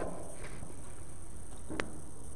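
Quiet room tone with a low steady hum, broken by a single short click near the end.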